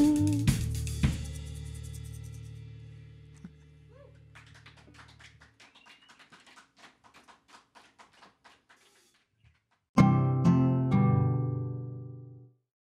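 Live rock band's final chord ringing out with two drum hits right after it, fading away over about five seconds. About ten seconds in, a short, loud musical sting with drum hits starts suddenly and fades.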